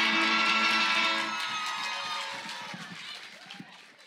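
The last electric-guitar chord of a live song rings out briefly while an audience claps and cheers. Everything fades away steadily near the end.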